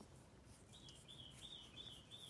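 Near silence, with a faint run of about five short, high chirps coming evenly in the second half.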